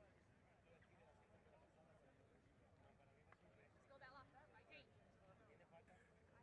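Near silence: faint sports-hall ambience with distant, indistinct voices, one of them briefly a little louder about four seconds in.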